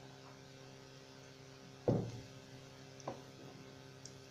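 Low steady electrical hum, with one dull thump about two seconds in and a lighter knock about a second later: kitchenware being handled on the counter while a chicken is seasoned.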